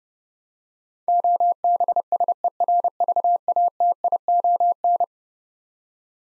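Morse code sent at 30 words per minute as a single steady-pitched keyed tone, a run of dots and dashes starting about a second in and lasting about four seconds. It spells out the word "OBSERVATION".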